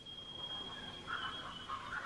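Faint recording of rainforest sounds played through a speaker: a steady high thin tone with soft animal calls coming in from about a second in.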